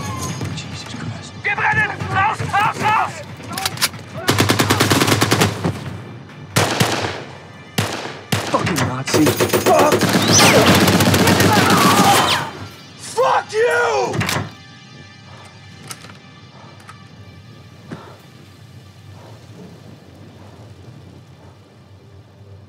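Film battle soundtrack: long bursts of rapid tank-mounted machine-gun fire, one about a second long and one about three seconds long, with men's voices yelling and screaming over and around them, as crew bail out of a burning tank. About fourteen seconds in it drops to a low bed of score and ambience with a few faint isolated shots.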